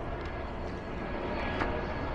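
Steady outdoor background noise: an even, low rush with no distinct events, swelling slightly near the middle.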